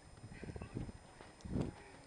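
A body thrashing and crawling through deep snow: irregular soft crunches and thuds, the loudest about one and a half seconds in.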